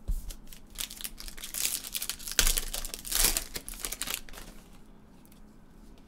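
Plastic crinkling and rustling as gloved hands handle trading cards and their plastic sleeves or wrapping, in a run of quick rustles that is loudest about two and a half to three seconds in and dies away after about four seconds.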